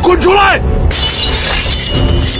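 A man shouts an angry command in Mandarin ('get out here'), then about a second in a sudden loud crash sounds over film score music.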